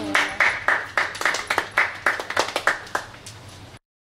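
A small group of people clapping, the claps quick and uneven, cut off suddenly near the end.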